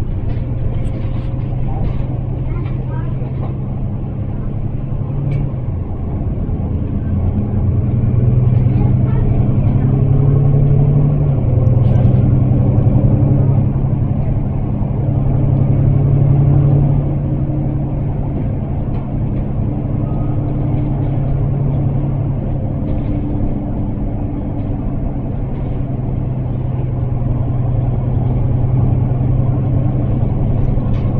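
Mercedes-Benz Citaro single-deck bus heard from inside the saloon while under way: the diesel engine's note climbs and drops back as the bus accelerates through its gears, loudest near the middle, over a steady road rumble.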